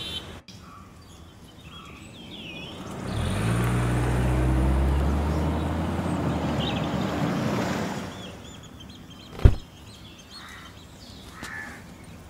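An SUV drives in and comes to a stop: its engine and tyre noise swell about three seconds in and fade out near eight seconds. Birds chirp over it, and a single sharp knock comes about nine and a half seconds in.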